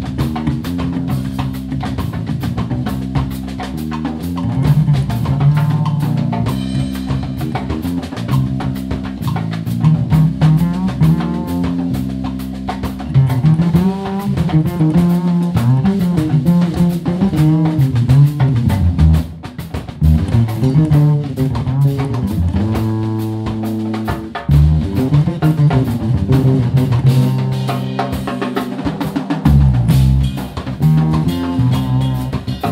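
Live instrumental band of double bass, electric bass guitar and drum kit playing, with busy, moving bass lines over a steady groove of kick, snare and cymbals. The band drops back briefly about two-thirds of the way through.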